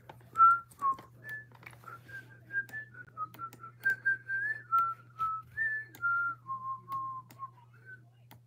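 A person whistling a tune through pursed lips: a string of short, clear notes that step up and down, dropping to lower notes near the end.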